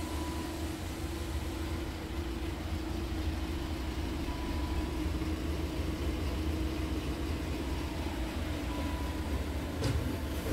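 DAF CF truck's diesel engine idling steadily, heard from inside the cab as a low, even hum. A brief click comes near the end.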